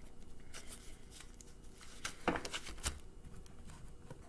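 Cards being handled on a wooden table: a handful of light taps and rustles of card stock as they are set down and gathered, with two louder ones a little past halfway.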